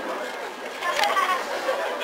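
Crowd of onlookers talking, several voices at once, with a sharp click about a second in.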